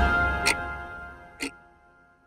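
News-bulletin intro theme music dying away, with clock-tick sound effects: two sharp ticks about a second apart as the music fades out.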